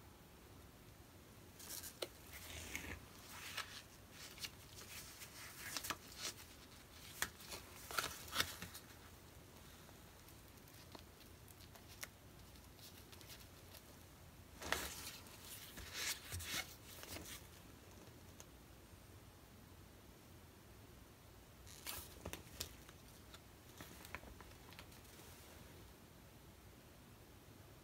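Faint scraping and rustling of a piece of cardboard being dragged sideways across wet acrylic paint on a canvas and handled, in four short groups of strokes a few seconds apart.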